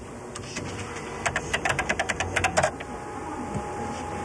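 Keys on a computer terminal's keyboard being typed: a quick, irregular run of about a dozen clicks, starting about a second in and lasting about a second and a half.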